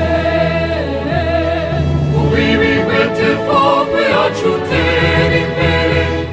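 A choir singing a school anthem in several voices over an instrumental backing with sustained bass notes.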